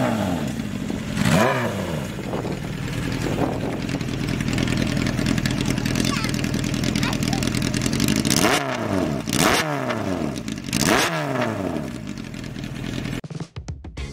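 Honda CBR400F's air-cooled inline-four idling through an aftermarket exhaust and blipped on the throttle: one quick rev about a second in, then three more between about 8.5 and 11 seconds, each rising sharply and falling back to idle. The engine sound cuts off suddenly about 13 seconds in.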